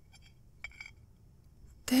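A few faint clinks of a fork against a dish in the first second, short and light.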